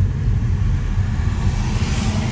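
Road and engine noise inside a moving car's cabin: a steady low rumble with a hiss above it.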